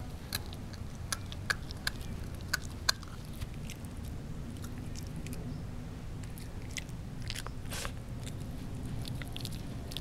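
Shiba Inu puppy gnawing and chewing a beef tendon: sharp crunching bites, the loudest in the first three seconds, then softer scattered chewing.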